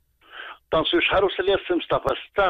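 Speech only: a man talking in Moroccan Arabic over a telephone line, his voice narrow and cut off in the highs. He starts after a brief pause at the very start.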